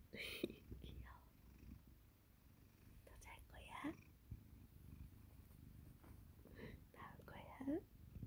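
A domestic cat purring steadily, a soft low rumble heard close up, with quiet whispering over it.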